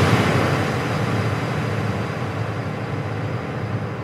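Intro sound effect: a loud, noisy rushing wash left ringing by a hit just before, slowly dying away.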